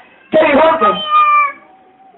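A man's voice, the lecturer's, giving one drawn-out, high intoned phrase of about a second that bends and falls slightly in pitch, between two short pauses.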